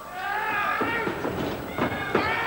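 A shrill, wavering shout from a spectator in the wrestling crowd, heard twice: once from the start to about a second in, and again starting near the end.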